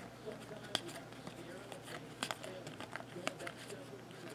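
A stack of Topps Chrome baseball cards being flipped through by hand, cards slid from one hand to the other: faint rustling with a few scattered sharp clicks of the stiff glossy card stock.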